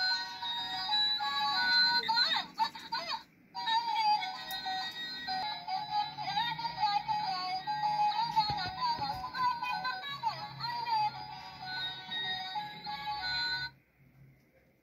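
A toy mermaid doll's built-in electronic song: a synthetic singing voice over a simple melody. It drops out briefly about three seconds in, then resumes and cuts off abruptly just before the end.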